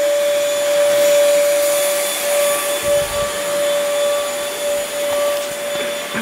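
Small corded stick vacuum running steadily as it is pushed over a hard floor: a constant motor whine over a continuous rush of air.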